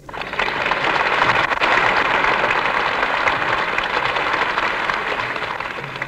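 Audience applauding, starting abruptly and dying down near the end.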